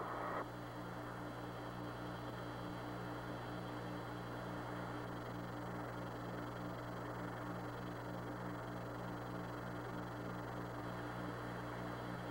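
Open radio link with no one transmitting: steady hiss and static over a low hum, with a fainter buzzing tone pulsing about three times a second.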